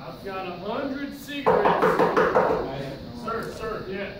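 Voices on a stage, with words too unclear to make out; a louder voice breaks in about a second and a half in.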